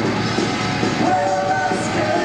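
Power metal band playing live, with long held notes near the end.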